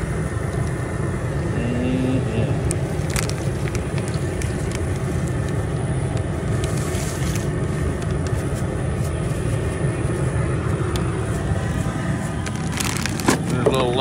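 Steady low rumble of an outdoor crawfish boiler's gas burners heating a pot of seasoned water, with a couple of knocks near the end.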